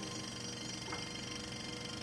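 Fading tail of a chiming intro jingle: a held note dying away, with one faint ping about a second in.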